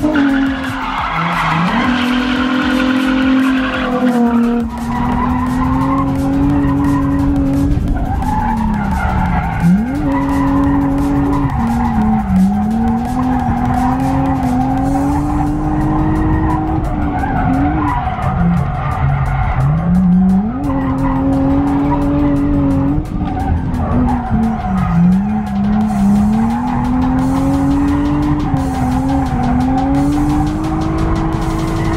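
Infiniti G35's V6 engine held at high revs while drifting, its pitch dipping and climbing back several times, with tyres skidding on asphalt.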